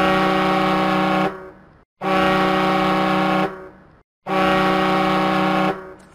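Ship's horn sounding three long, steady blasts of a little over a second each, about two seconds apart, each fading off briefly after it stops.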